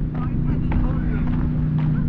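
Footsteps on a gravel path, about two a second, over a steady low engine hum, with faint voices.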